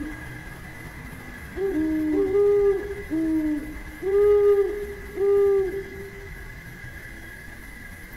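Zebra dove cooing: a run of soft, rounded coo notes from about a second and a half in until about six seconds in, alternating between a lower and a slightly higher pitch. A faint steady high hum runs underneath.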